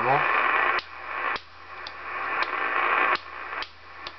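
Cobra 2000GTL CB base station receiver hissing with band static from its speaker. About five sharp toggle-switch clicks come through it, each raising or cutting the hiss, as the front-panel switches such as the noise blanker are flipped on and off.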